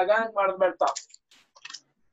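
A man talking for about the first second, then a few faint, short, high-pitched rustles or clicks.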